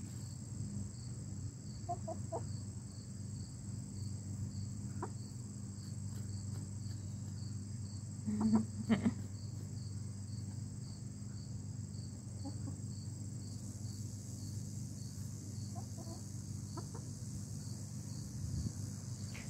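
Easter Egger hens giving a few short, soft clucks, the loudest pair about halfway through, over a steady high chirping of crickets.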